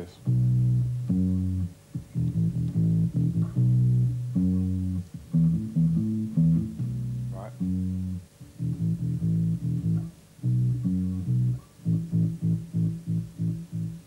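Solo electric bass guitar playing a reggae bass line: a riff of low held notes with short gaps, turning to quick, short repeated notes over the last couple of seconds.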